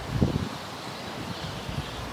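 Wind buffeting the microphone, an uneven low rumble over a steady hiss, with a brief low thump just after the start.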